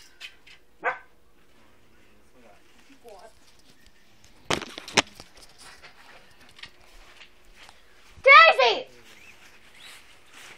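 A dog barks: one short bark about a second in and a louder double bark near the end. There are two sharp knocks around the middle.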